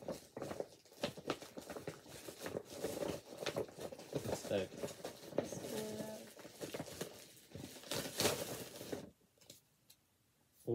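Paper gift bag rustling and crinkling as hands rummage inside it, with a few short voice sounds mixed in; the rustling stops about a second before the end.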